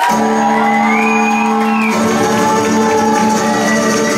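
Live acoustic music holding a steady chord as the song ends, with whoops from the audience rising and falling over it.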